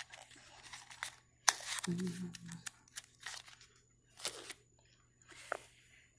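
Irregular crackling and rustling noises close to the microphone, the loudest a sharp one about one and a half seconds in, with a short hummed voice sound at about two seconds.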